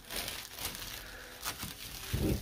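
Soft crinkling and rustling of tissue paper as small gift items are handled, with a few faint rustles.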